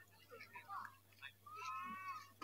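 A cat meowing once near the end: a single short, high call that dips in pitch as it ends.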